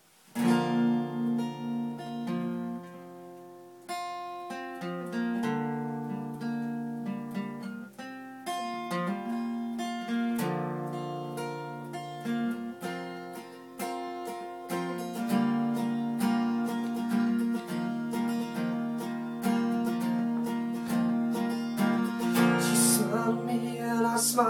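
Acoustic-electric guitar strumming a chord progression as the instrumental intro of a song, chords changing every second or two; it starts about half a second in.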